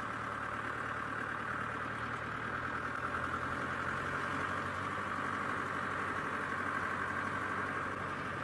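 Open safari vehicle's engine running steadily as it drives along a dirt track.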